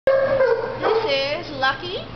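A dog whining and yipping: a held, high cry at the start, then higher, gliding cries about a second in, with a woman's voice starting near the end.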